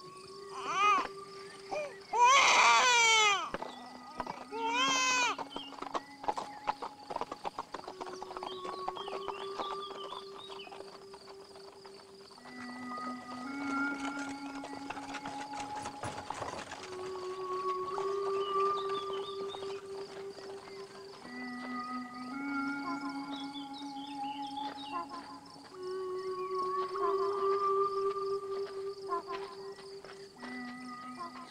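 An infant crying in a few loud wailing bursts in the first few seconds, then slow film-score music of long held notes that step from pitch to pitch.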